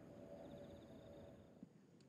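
Near silence: faint outdoor ambience, with faint, rapid insect chirping for about a second.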